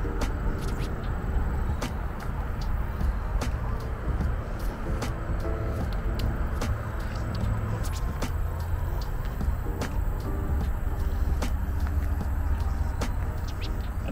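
Steady low outdoor rumble, with faint clicks every second or so and a faint pitched hum that comes and goes.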